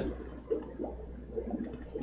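Quiet room tone with a steady low hum and a few faint computer clicks, once about half a second in and again near the end, as someone searches on a computer.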